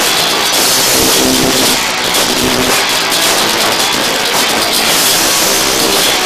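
Live punk rock band playing loud, with guitars and drums blurred together into a dense wall of sound.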